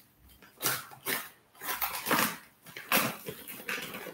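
White paper wrapping and brown packing tape being torn open by hand on a parcel, in several short rips with pauses between them.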